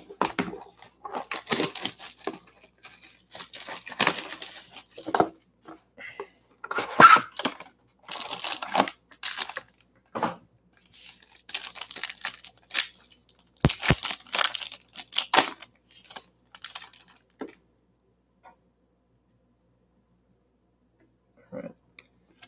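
Plastic shrink wrap and a foil trading-card pack being torn open and crinkled by hand, in a run of short rips and rustles.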